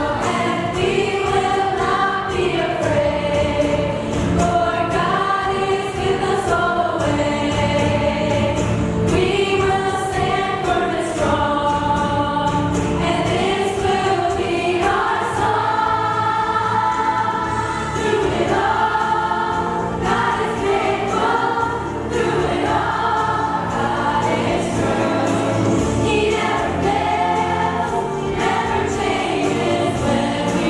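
Music: a group of women singing a song together over a backing track with bass and a steady beat.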